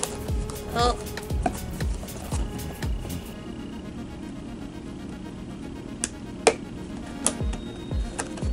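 Background music with a steady beat, and three sharp snips of scissors cutting into tough packaging about six to seven seconds in, the middle one the loudest.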